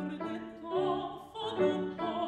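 Mezzo-soprano singing an operatic aria with vibrato, accompanied by a grand piano.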